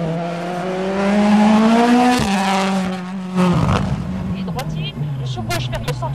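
Ford Puma Rally1 hybrid rally car's turbocharged four-cylinder engine under hard acceleration. Its note climbs for about two seconds, drops sharply on a gear change or lift, and gives a short loud crackle at about three and a half seconds. The note then falls and climbs again near the end.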